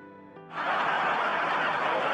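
Sitcom studio audience laughing, starting suddenly about half a second in, after a moment of faint background music. The laughter sounds dull, with the high end cut off as in old TV audio.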